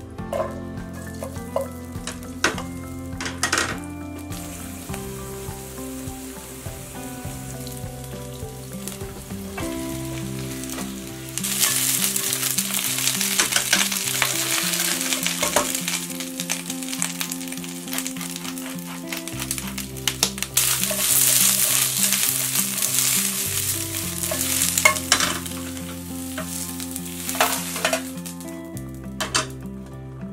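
Chili peppers and garlic sizzling in oil in a nonstick frying pan, then cabbage and green pepper stir-fried with tongs. The sizzle grows much louder about twelve seconds in, with clicks of the tongs against the pan.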